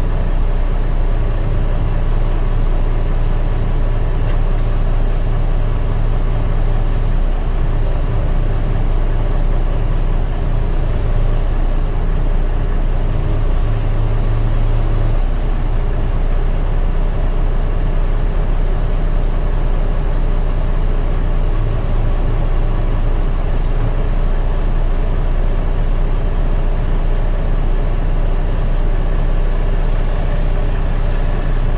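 Heavy Mercedes-Benz Actros SLT truck's diesel engine running steadily and deep while stationary, heard from inside the cab, with its hydraulic pump switched on to lift the trailer. The engine note swells slightly for a few seconds about halfway through.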